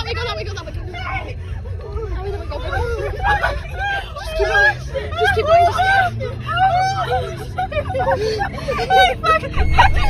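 Several agitated voices shouting and talking over each other inside a moving car, over the steady low rumble of the engine and road. The engine note rises slowly through the second half as the car speeds up.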